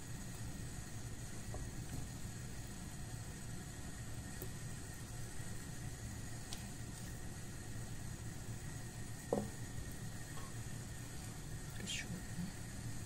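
Steady low background hum, with a single soft knock about nine seconds in as a raw chicken drumstick is set into a frying pan.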